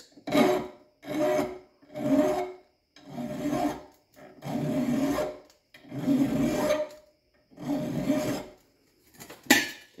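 Hand file rasping across the teeth of a shop-made steel dovetail cutter held in a vise, about eight slow strokes roughly a second apart, as clearance is filed into a tooth. A sharp knock near the end.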